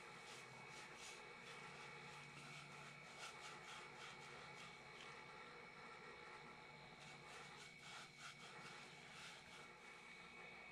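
Near silence: room tone with a faint steady high hum and many faint, soft scratches and taps.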